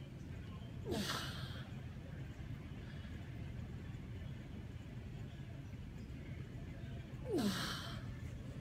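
A man's two forceful exhalations, each with a falling voiced sigh, about a second in and again near the end: breaths of exertion while pressing a kettlebell overhead from a deep squat. A steady low hum runs underneath.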